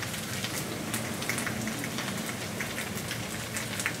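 Takoyaki sizzling in oil in a takoyaki pan on a gas burner: a steady crackle of many small pops.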